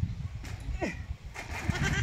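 An animal's bleating call: a short falling cry just before a second in, then a wavering bleat in the second half, over a low rumble.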